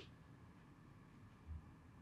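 Near silence: room tone, with one soft low thump about one and a half seconds in.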